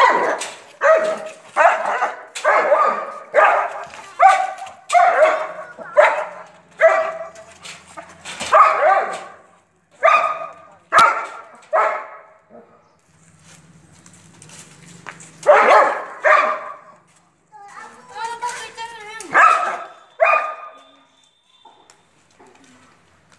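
Long-coated German shepherd barking repeatedly, about one bark a second for the first twelve seconds, then a few more barks after a short pause.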